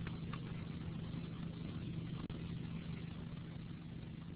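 Faint steady low electrical hum with a soft hiss from an open microphone on a webinar audio line.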